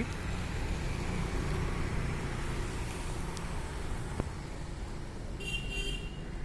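Steady traffic rumble from road vehicles, with a brief high-pitched sound near the end.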